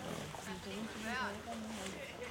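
People talking, with a short, high, quavering call about a second in.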